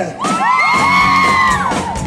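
Live pop band playing loudly on stage, with many voices in the crowd whooping and screaming over it in overlapping rising-and-falling cries.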